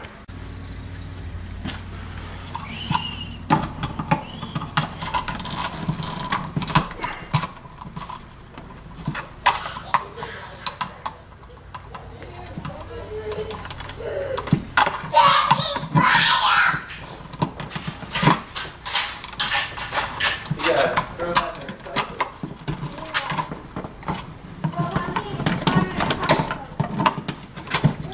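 Irregular clicks, rustles and scrapes from hands and pliers working stiff 12-gauge wire into a plastic electrical box and fitting the box into a drywall cutout.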